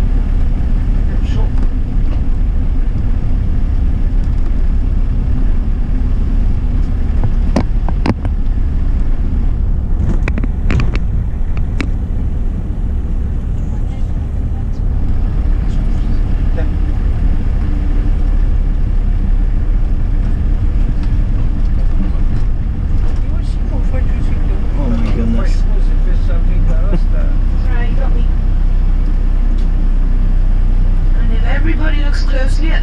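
Steady low rumble of a minibus engine and road noise heard from inside the cabin as it drives. A few sharp clicks or rattles come about eight seconds in and again around eleven seconds.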